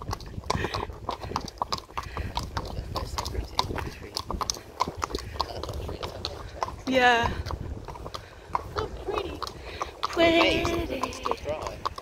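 Horse's hooves clip-clopping on a tarmac road, a steady run of sharp clicks.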